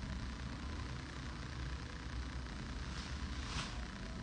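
Steady low mechanical hum with a faint even hiss, with one brief soft hiss about three and a half seconds in.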